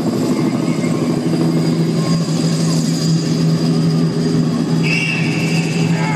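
A loud, steady mechanical drone from the stadium sound system, with a low hum held under it from about a second in.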